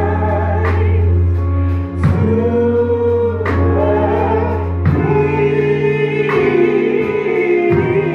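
Gospel music: voices singing together over sustained accompaniment chords and a bass line that shift every second or so.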